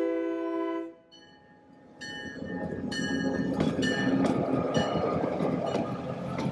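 Great Northern EMD F7 diesel locomotive approaching: its multi-chime air horn holds a chord and stops about a second in, then after a brief lull the engine and wheels grow loud as it draws alongside, with a run of sharp metallic clanks.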